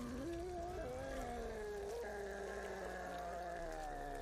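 A long held, wavering tone from the anime's soundtrack: one pitched sound that rises over the first second, then slowly sags and wavers.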